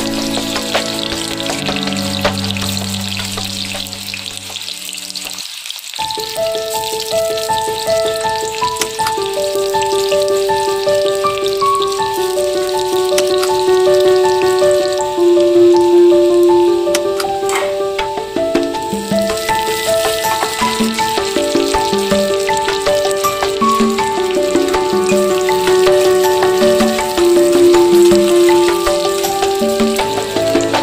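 Sliced onions sizzling as they fry in hot oil in a wok, heard under background music whose melody of short, even notes comes in about six seconds in.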